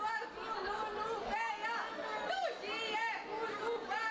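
Speech only: a woman talking over a microphone, with other voices chattering around her.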